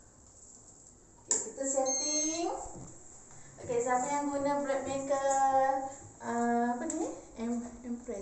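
A person's voice in drawn-out, sing-song tones without clear words, in two stretches. A short electronic appliance beep about two seconds in, from the bread machine just switched on at the wall.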